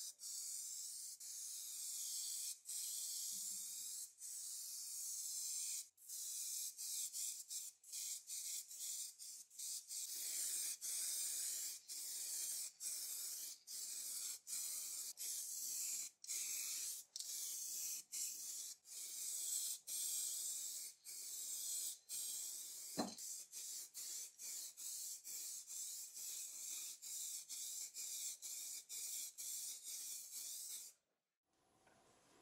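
Aerosol spray paint can hissing as it sprays paint, broken by many short gaps where the spray stops and starts again. One sharp click about three-quarters of the way through.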